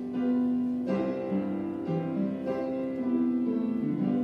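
Piano playing a slow hymn tune, held chords and melody notes changing about once a second.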